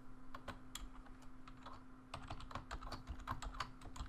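Keystrokes on a computer keyboard as a password is typed: a few scattered key clicks in the first second, then a quicker run of typing from about halfway.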